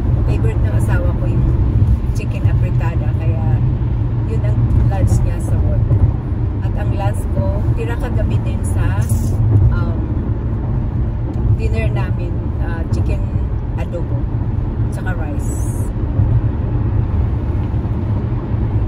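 Steady low road rumble inside a moving car's cabin, from the tyres and engine while driving.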